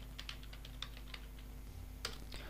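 Computer keyboard being typed on: a quick run of faint key clicks, about a dozen over two seconds, over a steady low hum.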